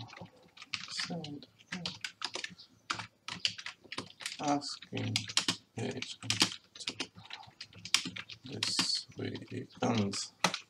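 Typing on a computer keyboard: a quick, uneven run of key clicks as a line of code is entered.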